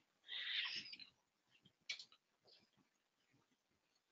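Near silence, with a soft hiss in the first second and then a faint single computer-mouse click about two seconds in.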